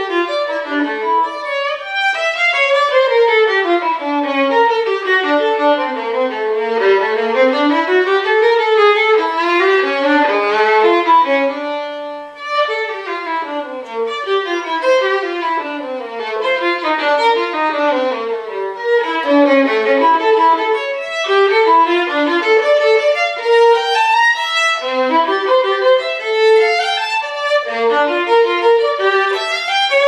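Unaccompanied violin playing quick runs of notes that sweep up and down, with a brief breath in the line about twelve seconds in.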